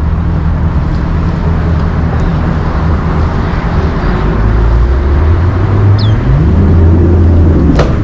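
Bass boat's outboard motor running at low speed, a steady low drone that grows louder and rises in pitch about six seconds in. A short high chirp comes about six seconds in, and a sharp click near the end.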